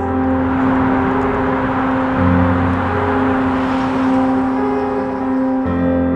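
Background music of slow, sustained droning chords, shifting about two seconds in and again near the end, under a rushing noise that swells in the middle and fades away by the end.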